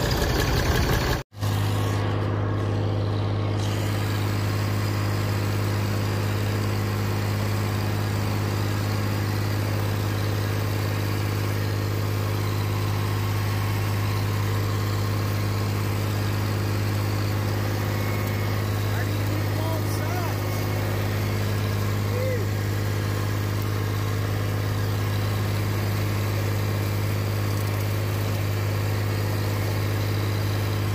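Massey Ferguson tractor engine running steadily with a constant low hum. The sound drops out for an instant about a second in, then resumes unchanged as the tractor drives through brush.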